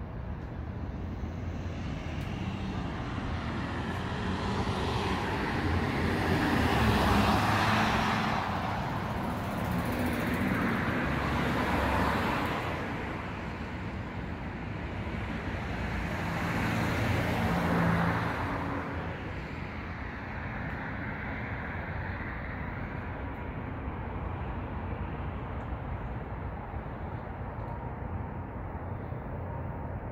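Street traffic: three cars pass one after another, each rising and fading over a few seconds, over a steady low rumble of road noise.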